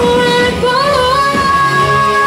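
Live band playing the song with singing; a long note is held from under a second in.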